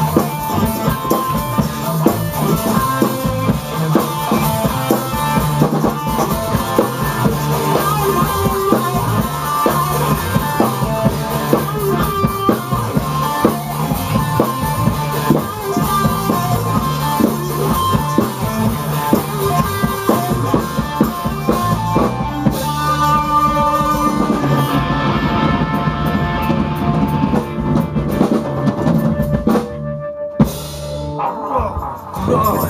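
A rock band jamming live in a small room: a drum kit and an electric guitar playing loudly, with no singing. The drumming thins out in the last several seconds while the guitar carries on.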